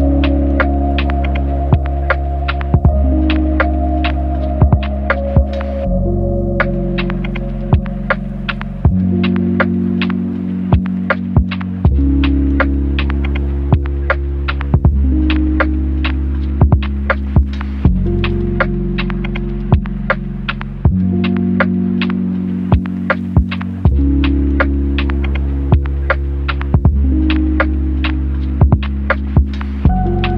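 Lo-fi hip hop beat: deep, sustained bass chords that change about every three seconds, under a steady run of crisp percussion clicks and hits.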